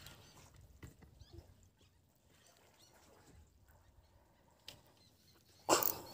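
Faint open-water ambience with a few light knocks and faint bird chirps, then one short, loud thump near the end.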